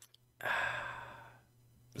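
A man breathing out once, a sigh of about a second that starts loud and fades away.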